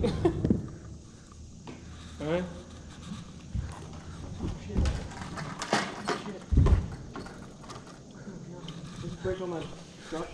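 A man laughs briefly, then scattered dull knocks and thumps, the loudest about six and a half seconds in, with faint talk in between.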